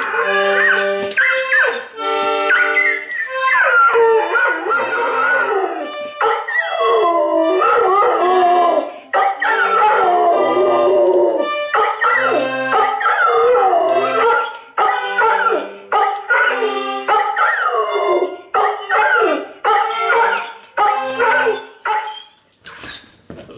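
A dog howling along to a small button accordion: the accordion plays steady chords with a separate bass note, and from about three seconds in long wavering howls that slide up and down in pitch run over the music, which stops near the end.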